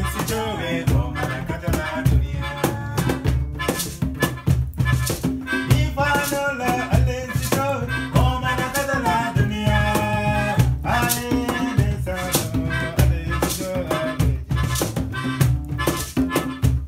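Acoustic band playing a world-music song live: a strummed acoustic guitar with rattling hand percussion on a steady beat, under a melody line.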